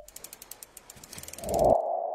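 Logo-animation sound effects: a fast run of ratchet-like clicks, then a low thud about one and a half seconds in that leaves a steady ringing tone slowly fading.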